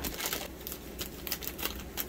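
Shiny plastic blind-bag wrapper crinkling as it is handled and opened by hand, with a steady run of small crackles.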